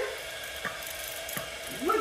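A cordless water flosser running: a steady, low mechanical buzz with water spraying, and a couple of faint clicks.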